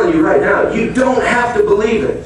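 A man preaching: continuous speech, with no other sound standing out.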